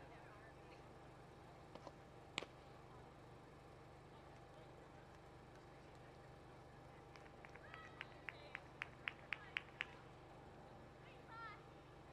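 Faint open-field ambience with one sharp pop about two seconds in, then a run of about eight evenly spaced claps, about four a second, with faint distant voices, like a team cheer from the dugout.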